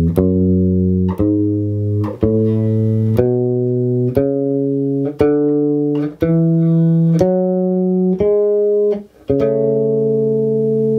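Electric bass guitar slowly playing the upper part of an ascending two-octave A major scale: single plucked notes about one a second, each rising a step and ringing into the next, with the top note held at the end.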